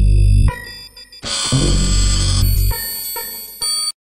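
Electronic logo sting: deep bass hits, one ending about half a second in and a longer one from just over a second in, under steady high ringing synth tones. A short final hit comes near the end.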